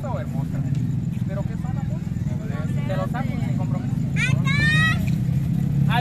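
A steady low engine drone, like a motor vehicle idling close by, under faint background chatter. About four seconds in, a voice rises in a brief high-pitched exclamation, the loudest sound here.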